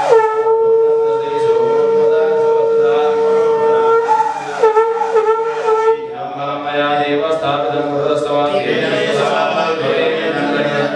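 A conch shell (shankha) blown in one long, steady note that drops in pitch as it begins, then dips and wavers about three times before stopping about six seconds in. Voices chanting mantras follow.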